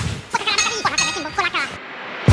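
Edited sound effects: a quick whoosh, then a run of short ringing tones that bend up and down in pitch, fading out near the end.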